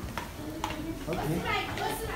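Two sharp clicks about half a second apart, then a person talking in the background.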